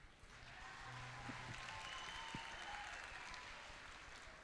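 Faint audience applause in a concert hall, building up just after the start and easing off near the end.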